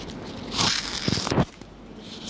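Crackling, rustling noise picked up by a clip-on lavalier microphone, in two bursts about half a second and a second in, while the faulty microphone is being adjusted.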